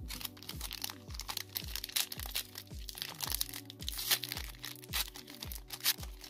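A foil trading-card pack crinkling and tearing as it is pulled open by hand, in a run of sharp crackles. Underneath is background music with a steady bass beat of about two a second.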